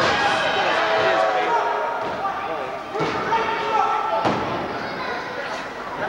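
Three heavy thuds on a wrestling ring's mat, one at the start, one about three seconds in and the loudest just after four seconds, as the wrestlers grapple.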